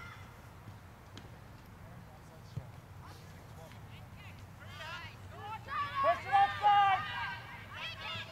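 Low outdoor field background with a single short knock about two and a half seconds in. In the second half come several high-pitched shouting voices, overlapping and loudest near the end, typical of young players and sideline spectators yelling during play.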